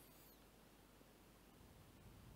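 Near silence: faint steady hiss.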